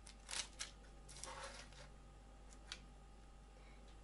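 Metal spatula cutting through a baked pizza crust and sliding under the slice on parchment paper: a few faint crisp crunching scrapes in the first half, then two short ticks.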